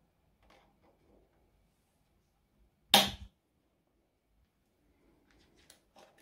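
Metal rings of an A5 ring binder snapping shut once, a single sharp snap about halfway through, after a paper divider page has been fitted onto them. Faint rustling of the page and plastic pocket pages comes before and after it.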